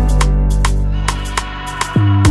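Background music with a drum beat and deep bass notes that slide down in pitch.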